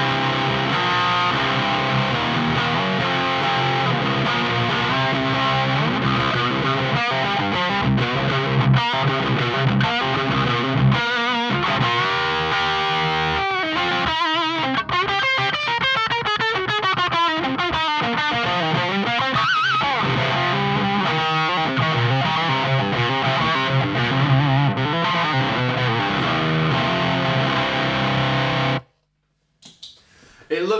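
Electric guitar played through the Victory Silverback amp's crunch channel, pushed by a Tube Screamer overdrive pedal: driven playing with held notes, vibrato and bends. It stops abruptly about a second before the end.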